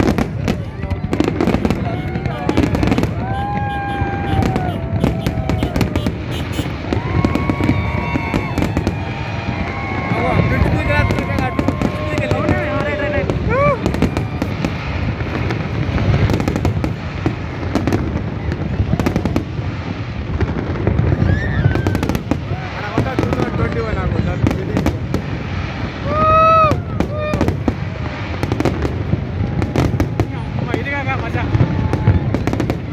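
Fireworks display going off without a break: a dense run of bangs and crackles from many shells at once. Crowd voices shout and call out over it, loudest near the end.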